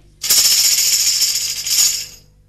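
Tambourine shaken in a fast, steady jingling roll lasting nearly two seconds, a sound effect marking a shadow puppet's quick exit.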